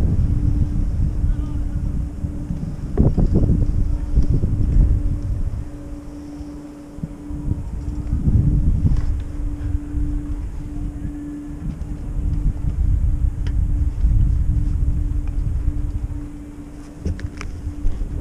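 Wind buffeting the microphone while riding an old fixed-grip double chairlift, over a steady low hum from the running lift that drops out now and then. A few light clicks come near the end.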